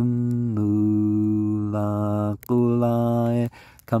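A low male voice chanting Quran recitation in Arabic, drawing out long sustained vowels. One note is held for about two and a half seconds and a shorter one follows, then a brief pause before the next phrase begins near the end.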